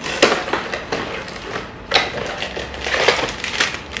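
Plastic wrapping and box packaging rustling and crinkling as ink cassettes for a Canon Selphy photo printer are taken out of their box, with a few sharper crackles, the loudest about two seconds in.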